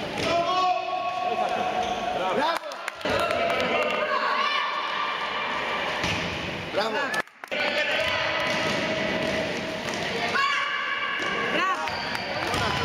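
Sounds of an indoor basketball game: the ball bouncing on the court, high-pitched squeaks and shouting voices.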